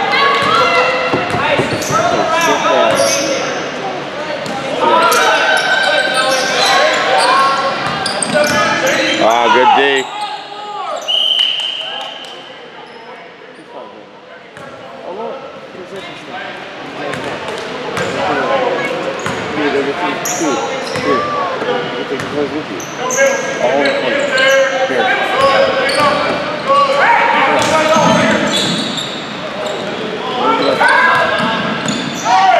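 A basketball bouncing on a hardwood gym floor during play, with players' voices echoing in the large hall. A single short steady whistle sounds about eleven seconds in, followed by a brief lull before play picks up again.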